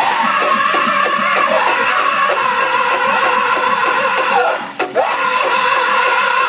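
Powwow drum group singing a men's chicken dance song: high male voices in unison over a steady beat on a big drum, about three beats a second. A short break comes shortly before the end, then the singing picks up again.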